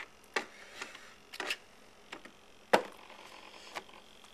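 Hands handling an RC model airplane's airframe and reaching into its cockpit to switch it on, giving a few sharp clicks and knocks. The loudest comes a little before three seconds in.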